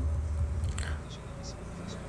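A man's brief closed-mouth hum, followed by a few faint clicks and mouth noises over low room noise.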